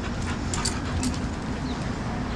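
Two leashed dogs moving about close by, with a few short clicks over a steady low rumble.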